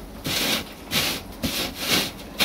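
Dried forest moss rubbed by hand back and forth across expanded-metal construction mesh, which grates it like a grater: a rasping scrape with each stroke, about three strokes in two seconds.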